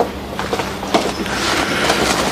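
Rustling of food wrapping as a bread roll is unwrapped, with a couple of light clicks of tableware, one at the start and one about a second in.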